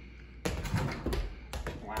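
A small basketball hitting an over-the-door mini hoop and bouncing. A run of sharp knocks and thuds starts about half a second in.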